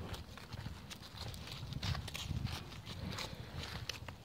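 A horse moving close to the phone: soft hoof steps and rustling in dry leaf litter, with scattered light clicks.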